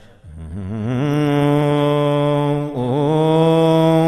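Solo male voice chanting an Islamic devotional poem without accompaniment. After a brief pause at the start it comes in and holds long, wavering, ornamented notes, breaking off once briefly near the middle before holding again.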